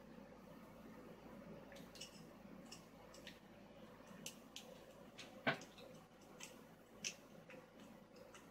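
Faint, scattered ticks and scrapes of a lock pick and tension wrench being worked into the keyway of a vintage Yale wafer padlock, with one sharper click about five and a half seconds in and another near seven seconds.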